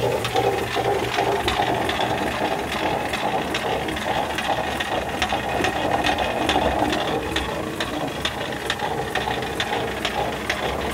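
Water-driven stone grist mill running and grinding corn: a steady grinding rumble with a quick, regular clicking from the wooden feed mechanism knocking as grain is fed from the hopper onto the turning millstone.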